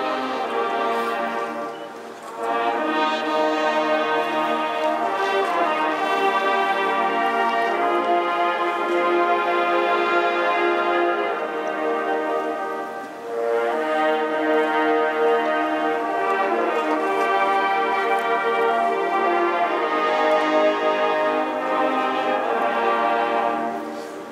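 A brass band playing a slow piece in long, held chords, with brief breaks between phrases about every eleven seconds.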